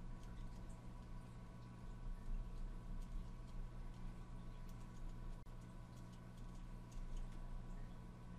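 Faint, scattered clicks of small metal parts being handled as a diamond cutting-wheel bit is pushed into a rotary tool's flexible-shaft handpiece, over a steady low background hum.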